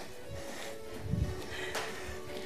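Quiet background music with a soft low beat.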